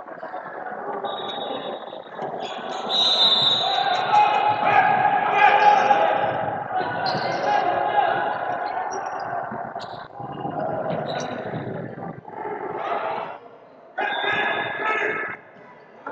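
Futsal played in a large, echoing hall: players shouting and calling to each other while the ball is kicked and bounces on the court floor.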